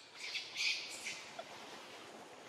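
A short burst of high, scratchy squawk-like animal calls lasting under a second, loudest near the middle of the burst.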